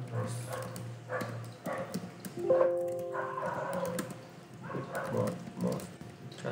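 Computer keyboard typing: a run of key clicks, with a short pitched tone about two and a half seconds in.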